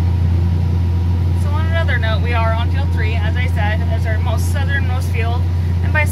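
Tractor engine running with a steady low drone, heard from inside the cab, with a woman talking over it from about a second and a half in.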